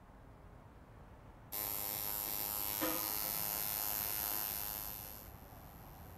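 Tattoo machine buzzing steadily as the needle works into skin. The buzz starts suddenly about a second and a half in, holds a steady pitch, and fades away near the end.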